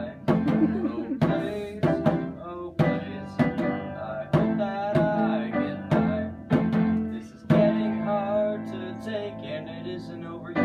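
Upright piano playing chords, with a djembe hand drum striking along to the beat.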